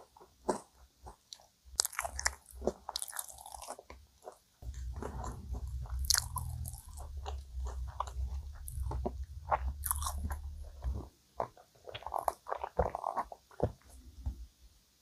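Close-up mouth sounds of chewing a soft cream-filled donut: wet clicks and smacks. A low rumble runs through the middle, and near the end there is a soft tearing as a cream donut is pulled apart.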